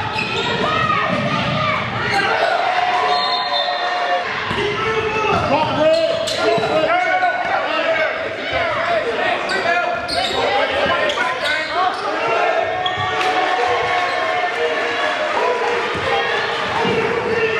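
Live basketball game sound in a gym: a basketball dribbled on the hardwood floor, with players and spectators calling out, echoing in the large hall.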